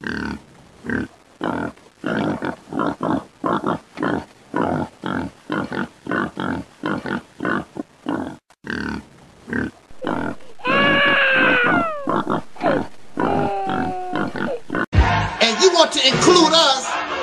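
A rapid, regular series of short grunts, about two or three a second, then a drawn-out squeal that falls in pitch and a few shorter calls. A thump and music come in near the end.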